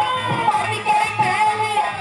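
A woman singing a Haryanvi folk ragni into a microphone through a PA, holding long wavering notes over a steady drum beat.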